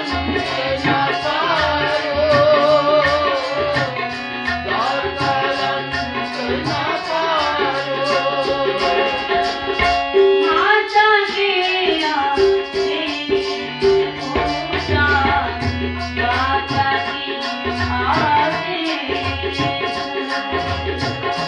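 Sikh kirtan: a woman singing a devotional melody with vibrato, accompanied by a harmonium's sustained reed chords and a steady tabla rhythm.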